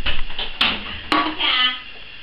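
Women's voices and laughter, with two sharp knocks or clinks about half a second apart in the middle.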